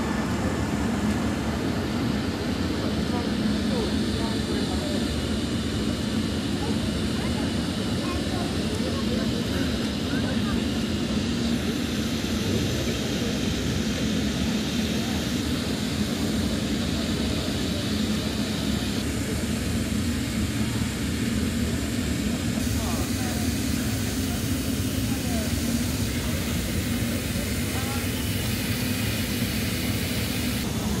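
Steady low drone of a moored warship's machinery and ventilation, with a faint murmur of voices under it.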